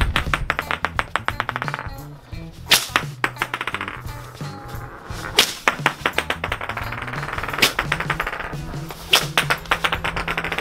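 A short whip cracking against a wooden whip top with a steel-ball tip as it spins on a tiled floor, a strike about every two to three seconds, each followed by a fast run of ticks that dies away. Background music plays throughout.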